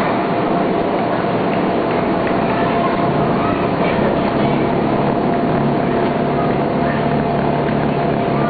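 Electric air blower running to keep an inflatable bouncy play area inflated: a loud, even rush of air with a constant whine, and a low hum that joins in about three seconds in.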